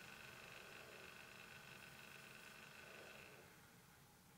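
Near silence: faint room tone with a faint steady high whine that fades out about three and a half seconds in.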